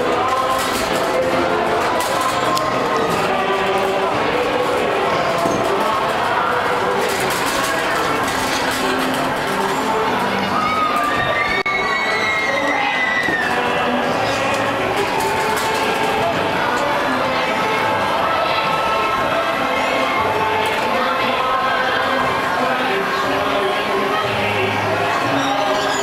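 Carousel music playing under the steady chatter and shouts of a crowd with children. Near the middle, one high voice calls out, rising and falling.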